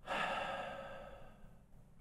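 A person's sigh: a breathy exhale that starts abruptly and fades away over about a second and a half.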